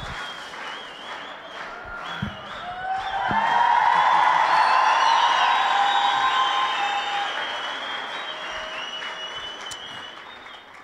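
A congregation applauding, swelling about three seconds in and slowly fading toward the end, with high held voices sounding over the clapping.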